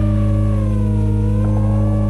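Ambient background music with sustained bass notes. Over it runs a high whine that slowly wavers in pitch, above a steady hiss.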